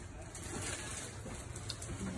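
Faint steady background noise with a low hum: room tone, with no distinct event.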